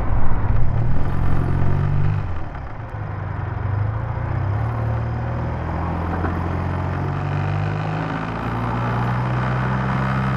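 BMW motorcycle engine running at cruising speed on a freeway, with steady wind noise over the rider's microphone. The engine note is louder and shifts in the first two seconds, then holds steady.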